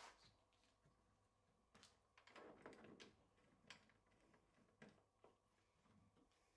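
Near silence: room tone with a few faint, scattered clicks and soft knocks.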